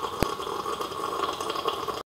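Tea being slurped from a teacup in one long, uneven slurp, with a sharp click about a quarter of a second in.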